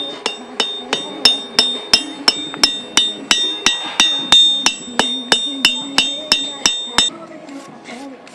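Blacksmith's hand hammer striking red-hot metal on an anvil: a steady rhythm of about three ringing blows a second that stops about seven seconds in.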